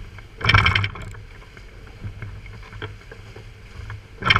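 Twin Suzuki outboard motors running steadily at trolling speed, a low hum under the wash of the wake. A brief loud rush of noise comes about half a second in.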